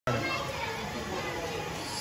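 Indistinct background voices and chatter, at a distance, over a steady background hum.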